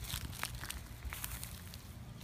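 Dry leaves and twigs crackling and crunching underfoot in a quick, irregular series of small snaps, as someone walks across leaf litter.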